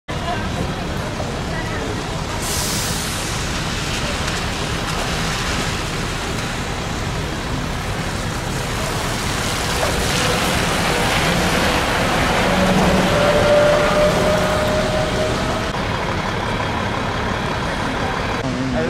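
City buses moving through a terminal on wet roads: a continuous engine rumble with tyre hiss, and a short air hiss about two and a half seconds in. An articulated bus passes close in the middle, and the sound is loudest as it goes by, with a steady whine near the end of its pass.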